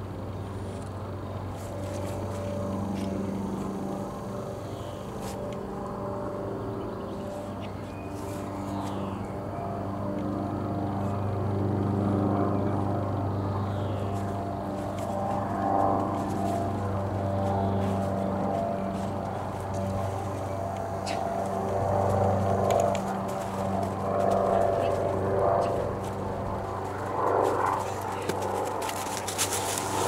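A steady low engine drone, with a person's voice at times in the second half.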